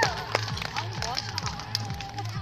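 A held sung note through the stage PA trails off right at the start. Then comes a quiet lull with a steady low hum, faint voices and scattered small clicks.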